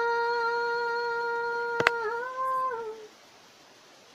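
A woman singing unaccompanied, holding one long steady note for about two seconds, then sliding up and back down before stopping about three seconds in. A single sharp click sounds just before the note moves.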